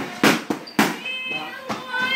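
Two sharp smacks of punches landing on boxing focus mitts, about half a second apart. A brief high-pitched squeak follows.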